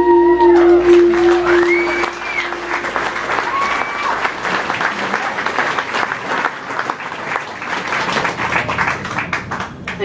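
Audience applauding and cheering at the end of a song, with several rising-and-falling whoops in the first few seconds, while the band's last held note rings out and fades by about three seconds in.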